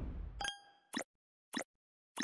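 Logo ident sound effect: a bright ringing chime about half a second in, then two short blips about half a second apart, as the street sound under it fades out.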